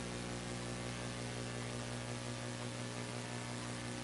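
Steady electrical mains hum with a stack of even overtones, over a faint steady hiss.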